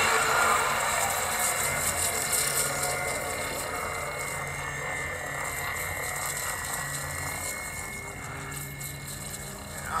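Film soundtrack played from a screen: a wordless stretch of low rumbling ambience and hiss that slowly fades, with a brief swooping tone near the end.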